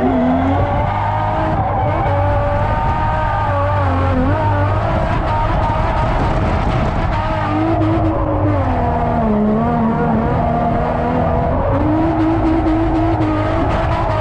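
Nissan 350Z drift car heard from inside the cabin mid-drift: the engine running hard at high revs, its pitch wandering up and down with the throttle, dipping about two thirds of the way through and climbing again near the end, with tyres squealing.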